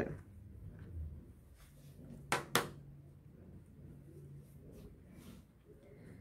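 A small cutting tool set down on a plastic cutting mat: two quick light clicks close together a little past two seconds in, amid faint handling of the sugar paste.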